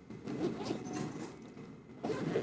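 Low rustling and shuffling handling noise from people moving at the lectern and its microphones, strongest about half a second in.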